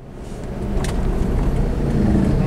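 Car driving on an open road, heard from inside the cabin: a steady rumble of engine and tyre noise that swells up over the first half second, with one brief click about a second in.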